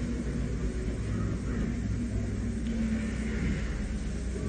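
Background of an old sermon recording with no words: a steady low mains hum and faint hiss, with soft room noise from the hall.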